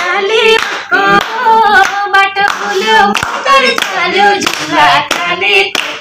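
Singing with steady hand clapping keeping time, in a small room.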